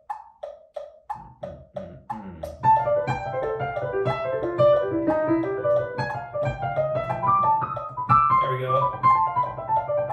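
Metronome clicking at 180 beats a minute, three clicks a second, then a digital piano comes in about two and a half seconds in with a fast run of notes over the clicks. It is a slow-practice run-through of a tricky passage, with the metronome raised five clicks at a time.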